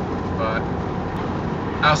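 Steady engine and road noise heard inside an RV's cab while driving, with a low hum underneath.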